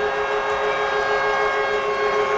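Hockey arena goal horn blowing one long, steady blast, signalling a home-team goal.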